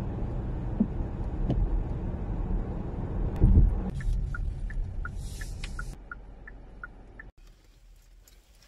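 Car driving on a wet road: a steady low rumble of engine and tyre noise. About halfway through it gives way to a quieter street sound with an even ticking about three times a second, alternating between a higher and a lower tick, and a short hiss.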